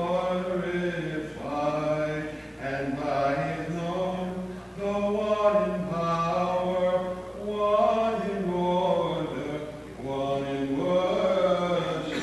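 Unaccompanied Byzantine chant: a voice sings slow, long-held notes that step up and down. Each phrase lasts a few seconds, with short breaths in between.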